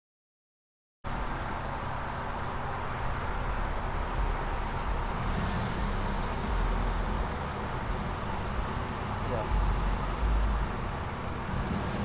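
Road traffic noise: a steady hum and low rumble of passing cars that starts about a second in, after a moment of silence.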